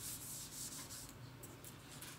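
Faint rubbing noise over a steady hiss.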